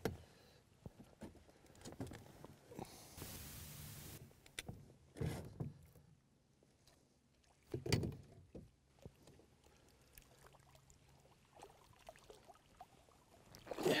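Faint sounds from a small inflatable fishing boat on a lake while a hooked trout is played: a brief rush of water-like noise about three seconds in, then a few soft knocks and thumps.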